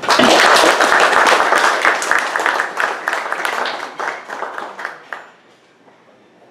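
A roomful of people applauding. It starts at once, is loudest for about two seconds, then thins to scattered claps that stop about five seconds in.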